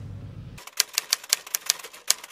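Typewriter-style typing sound effect: quick, uneven key clicks, about six or seven a second, as on-screen text types itself out. A low car-cabin hum cuts off about half a second in, just before the clicks begin.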